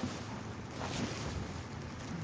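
Rummaging through garbage in a dumpster: faint rustling and handling of plastic bags and cardboard boxes, over a steady low rumble.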